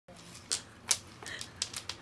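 Metal chain strap of a handbag clinking and rattling in a few irregular, sharp clinks as a small dog tugs and drags the bag across a wooden floor.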